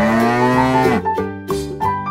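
A cow mooing: one long moo that rises slowly in pitch and drops off about a second in. Children's music with plucked notes follows.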